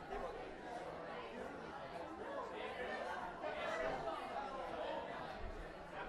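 Many people chatting at once, a steady hubbub of overlapping voices with no single voice standing out.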